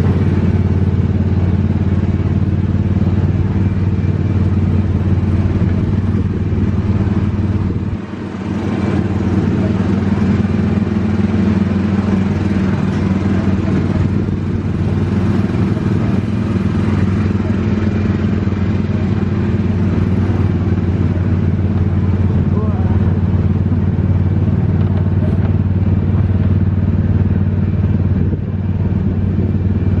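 Autopia ride car's engine running steadily as the car drives along the track, heard from the driver's seat; the engine dips briefly about eight seconds in.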